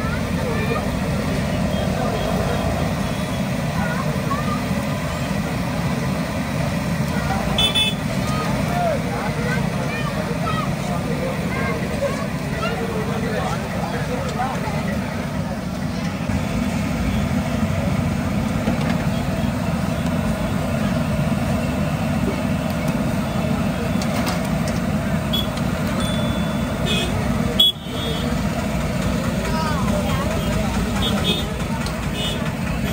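Busy street-market din: a steady low rumble of traffic with background crowd chatter throughout. A few short high beeps come through, once about eight seconds in and several more near the end.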